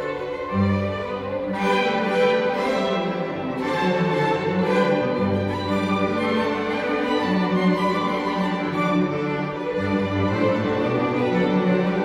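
String orchestra playing: violins over a moving line of cellos and double basses, in the resonance of a large stone church.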